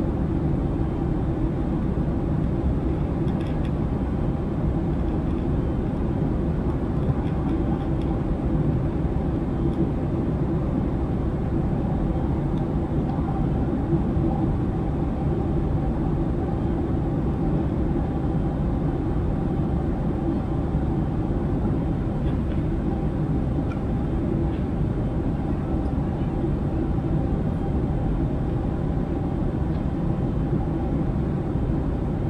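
Airliner cabin noise in cruise: a steady rush of engine and airflow noise, heaviest in the low end, with faint steady hums in it.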